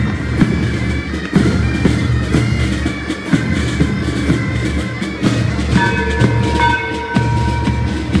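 School marching band playing as it marches: steady drum beats under wind instruments, with long held notes from about six seconds in.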